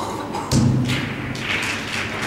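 A dull thump about half a second in, followed by a few lighter knocks.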